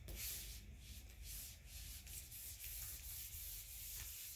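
Whiteboard eraser wiping dry-erase marker off a whiteboard in quick back-and-forth strokes, a dry hissing rub repeated about two or three times a second.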